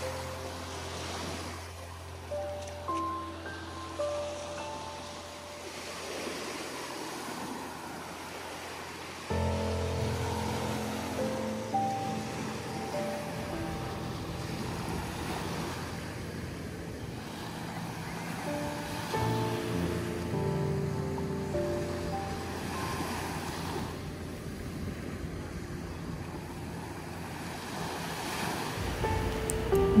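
Very small waves breaking gently at the shoreline and washing up the sand, swelling and fading every few seconds. Mixed with background music of held, slowly changing notes.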